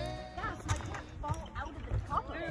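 A music track cutting off at the start, then people's voices talking and laughing, with a few short light knocks.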